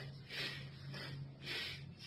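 Four short, breathy puffs of a person breathing hard close to the microphone, the loudest about half a second and a second and a half in, over a steady low hum.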